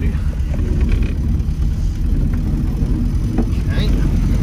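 Austin 7's small four-cylinder side-valve engine pulling the car along on the road, heard inside the cabin as a steady low drone.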